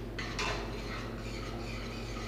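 A metal utensil stirring a pot of barely simmering water to swirl it into a vortex for poaching an egg. A couple of light clinks against the pot come in the first half-second, then a steady swishing hiss of moving water.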